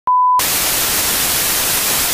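A brief steady 1 kHz test tone, the kind broadcast with TV colour bars, cut off after about a third of a second by loud, even white-noise static hiss, like an untuned television.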